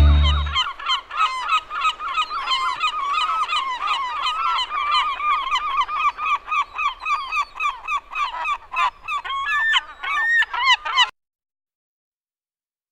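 A dense flock of birds calling over one another, many short calls overlapping without pause, cutting off suddenly near the end.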